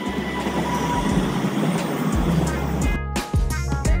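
A city tram running past on street rails, a steady noise of wheels and motor with a faint thin tone at first. About three seconds in this gives way abruptly to background music with plucked notes and a beat.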